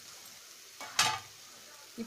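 Chopped onion, tomato and green chilli sizzling in oil in a kadai, with a spatula scraping against the pan once about halfway through.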